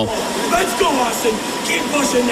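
Busy indoor ambience: a steady rushing noise with several voices talking and calling in the background.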